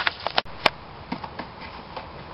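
A quick run of about five sharp clicks and knocks in the first second, the last one the loudest, then a few faint ticks. These are handling noises from working on the coolant hoses and fittings in the engine bay.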